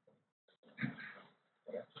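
A brief low murmur from a person's voice, about half a second long, in a pause between speakers, just before speech resumes near the end.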